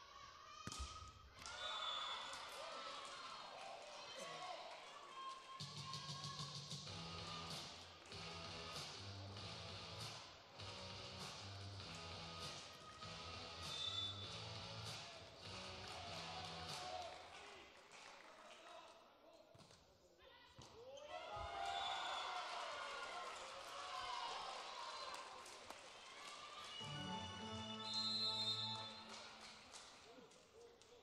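Indoor volleyball match: sharp ball hits and players' shouts in an echoing sports hall, with arena music and its repeating bass line playing through the middle and again near the end.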